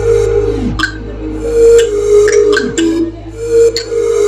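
Electronic dance music backing track: a steady bass drone under a held synth tone, with a falling synth swoop twice, about two seconds apart, and sharp percussive hits.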